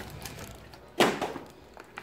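A single sharp thump about a second in, over faint background noise.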